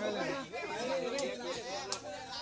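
Spectators' voices chattering around the court, with two short sharp clicks, one about a second in and one near the end.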